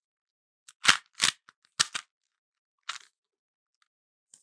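A Rubik's Cube being twisted by hand: about five short plastic clacks from its layers turning, spread over a couple of seconds as a move sequence is worked through.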